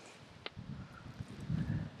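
Faint, uneven low rumble of wind on the microphone, with a single light click about half a second in.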